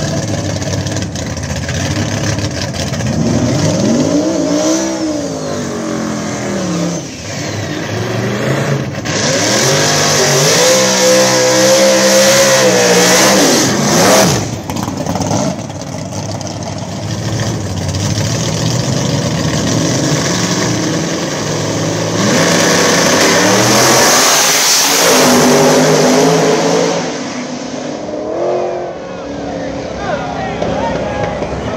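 Drag-race cars on a strip: an engine revs up and down in short blips, then is held at high revs with the tires spinning in a burnout. Later, cars launch hard and run off down the track, and the sound drops away near the end.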